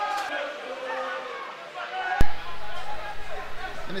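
Shouting voices of players on a football pitch, heard at a distance, then a single sharp click a little past halfway, after which a low hum comes back.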